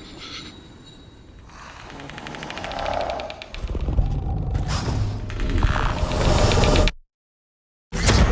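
Trailer sound design: a tension swell of low rumble and rapid, dense clicking that builds over several seconds, then cuts off suddenly to dead silence about seven seconds in.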